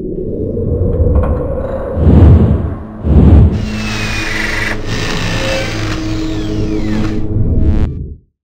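Outro logo sting of sound-design music: a low rumble that builds, two heavy low hits about a second apart, then a steady drone with a high hiss over it that cuts off suddenly at the end.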